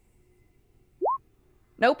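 A single short rising electronic bloop about a second in, the notification of a dice-roll result posting to the online tabletop; the rest is near silence.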